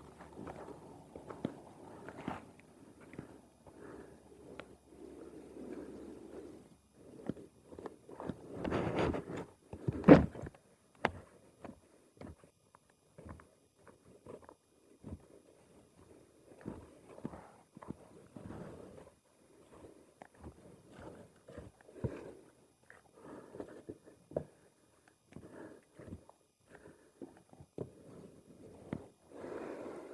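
Footsteps of booted feet on loose gravel, irregular and unhurried. There is a louder scuffing noise about nine seconds in, followed by a sharp knock.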